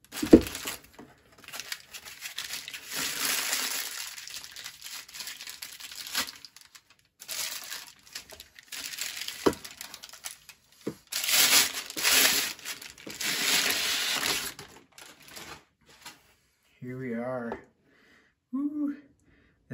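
Thin plastic wrapping crinkling and rustling in several bursts as a light bar is worked out of its bag, with a sharp knock just after the start and a couple of light clicks midway.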